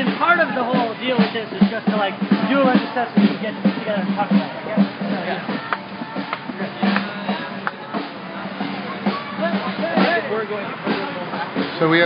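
Many voices talking at once over music with a steady drum beat.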